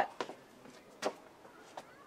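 A man says one short word about a second in, between quiet pauses, with a faint tick near the end.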